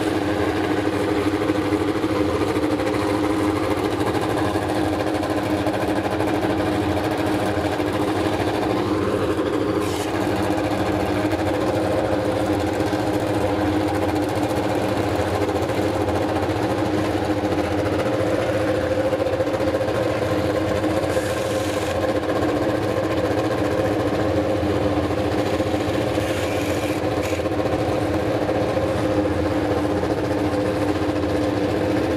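An engine idling at a steady, unchanging pitch, with a brief click about ten seconds in.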